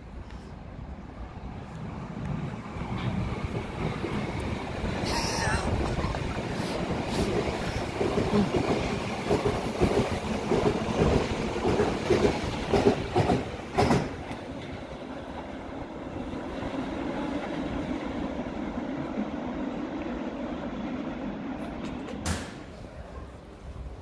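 Berlin U-Bahn train of the U5 running along the platform: the wheels clatter over the rail joints, loudest about 8 to 14 seconds in, then a steadier rumble fades as the train moves away.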